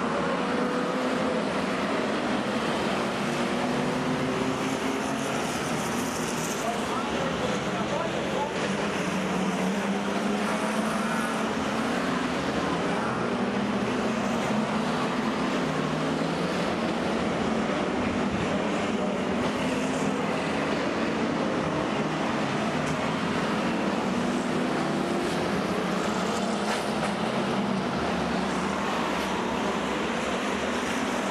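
A pack of speedway stock cars racing round the oval together, many engines running at once with their pitch rising and falling as the cars accelerate down the straights and lift for the bends.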